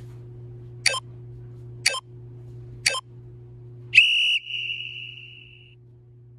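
Workout interval timer counting down: three short beeps about a second apart, then one longer tone that fades away, marking the start of a timed plank.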